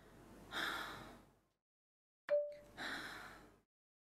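Two breathy sighs, each lasting about a second, with a single short chime-like note ringing just before the second one.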